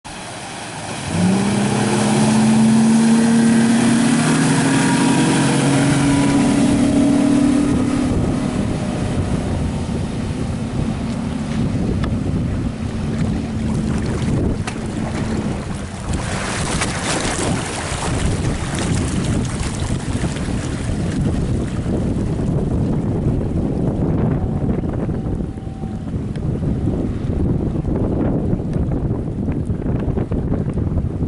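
Outboard motor of a Sea Fox 256 center-console boat running under throttle: its tone rises sharply about a second in and holds steady for several seconds, then sinks into the rush of wind and water as the boat runs off, with a gust of wind on the microphone about halfway through.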